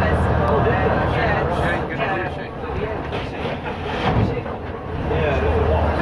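Leyland Titan PD2 bus's six-cylinder diesel engine running as the bus travels, heard from on board with rattles and whine from the body and drivetrain. The engine note drops away for about three seconds mid-way, with a knock near the middle, then comes back as the bus pulls on again.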